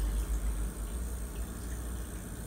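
Aquarium air pump running, a steady low hum with a faint even hiss above it.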